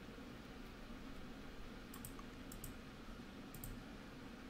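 Faint clicking at a computer: three pairs of quick clicks in the second half, over quiet room tone.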